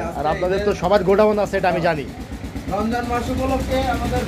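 Speech: a man talking, with a short pause about halfway through before a voice resumes, over a steady low background hum.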